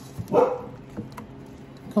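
A single short dog bark about half a second in, followed by a few faint clicks of a spatula against a stainless steel bowl while sauce is stirred.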